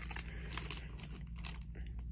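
Faint rustling and a few soft clicks from vinyl album jackets in plastic sleeves being handled, over a low steady hum.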